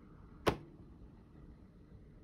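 An ASUS laptop lid is closed by hand and shuts onto the base with a single sharp click about half a second in.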